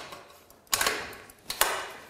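A click at the start, then two metallic clanks about a second apart, each ringing briefly: the aluminium rolling scaffold's bottom crossbar being locked into the ladder frame with its quick-release lever.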